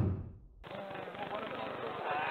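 The last booming drum hit of an intro jingle dies away, then, about two-thirds of a second in, the sound cuts to the murmur of a sports hall with faint distant voices.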